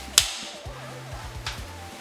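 A single sharp clapperboard clap about a quarter of a second in, marking the start of a take, followed by a fainter click, over background music with a stepping bass line.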